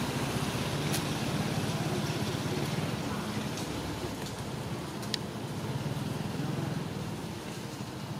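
Steady low rumble of motor traffic, with a couple of faint sharp clicks, about a second in and about five seconds in.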